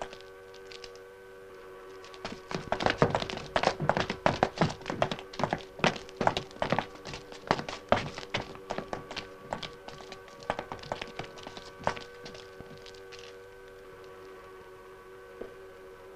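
A rapid, irregular clatter of knocks and thunks, thickest through the middle and thinning out near the end, over a steady hum of several held tones.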